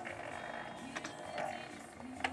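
Motorized baby swing's drive mechanism running, with a sharp click about a second in, one of a series that comes about once a swing, over a faint steady hum.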